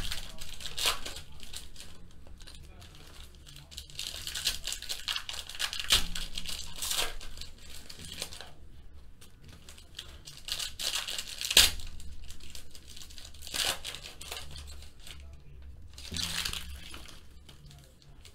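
Foil trading-card packs being torn open and their wrappers crinkled, in repeated bursts of rustling every few seconds. Two sharp taps stand out, about six seconds in and near the middle, the second the loudest sound.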